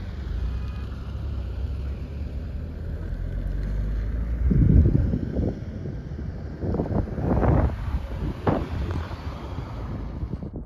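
A vehicle driving on a rough mountain road: a steady low rumble of engine and road noise. From about halfway through, wind buffets the microphone in several gusts.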